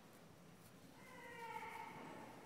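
A faint, drawn-out, meow-like cry that falls slightly in pitch, starting about halfway through and lasting about a second.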